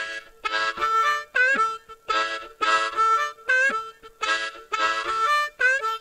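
Solo blues harmonica played cupped against a microphone: short chordal phrases with bent notes, repeated as a rhythmic riff with brief breaths between them.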